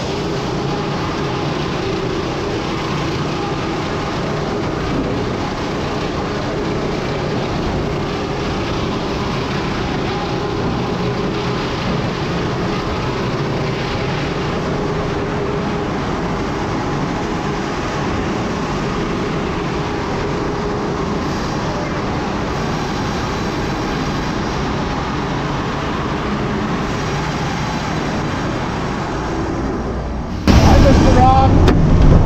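Steady, loud din of a large sawmill's machinery running, the log debarker and its conveyor chains among it. A low hum with a few steady tones runs through the first two-thirds.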